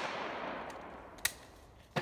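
The reverberating tail of a shotgun shot rolling away across the range, fading out over about a second and a half. About a second in comes a much fainter, sharp crack.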